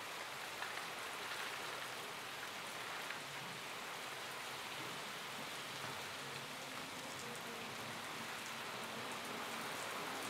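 Steady rain falling, an even patter with fine scattered drops, and a faint low tone joining about six seconds in.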